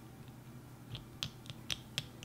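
Mini glitter slime being stirred in a tiny bowl with a small tool, making sharp, sticky clicks. The clicks come a few at first, then quicken to about four a second from about a second in.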